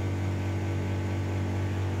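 Steady mechanical hum of a running household appliance: a strong low drone with a few fixed higher tones over faint hiss, unchanging throughout.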